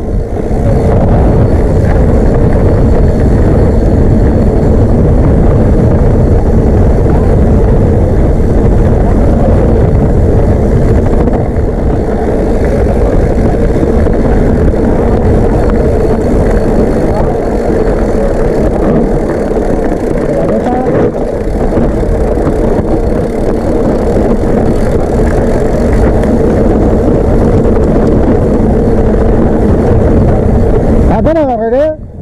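Mountain bike rolling fast down a rough dirt and gravel trail: a loud, steady rush of tyre and trail noise with the frame rattling, and wind on the microphone.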